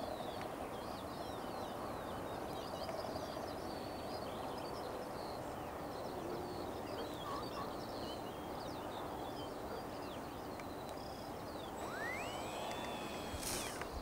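Many small birds chirping and twittering over a steady outdoor background hiss. About twelve seconds in, a single whistle rises in pitch, holds for about a second, then gives way to a short sharp sound.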